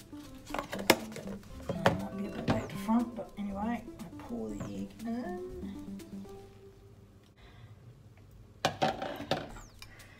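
Kitchenware knocked against a benchtop: an electric hand mixer and a plastic mixing bowl being handled, with a few sharp knocks in the first three seconds and a quick cluster of clinks near the end.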